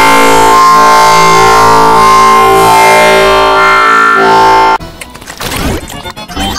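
Very loud, distorted electronic chord of many stacked, sustained tones, held for nearly five seconds. It cuts off suddenly into quieter, choppy warbling sound broken by clicks.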